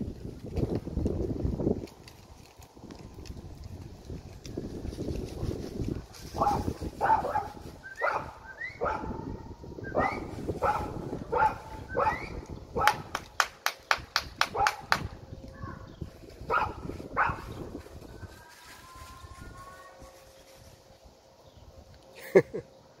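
A dog barking in a run of short barks, about one a second, with a quick string of sharp clicks partway through.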